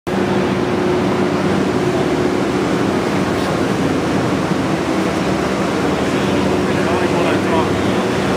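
Steady hum and rush of ventilation fans, with voices murmuring in the background toward the end.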